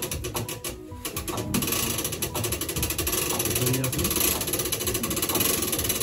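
Hand-wound tower clock mechanism being cranked, its winding ratchet clicking in a rapid, even run that grows louder and denser about a second and a half in.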